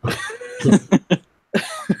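Laughter in short, breathy bursts.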